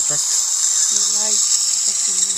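Steady high-pitched hiss of dental suction running, with a short hummed voice about a second in.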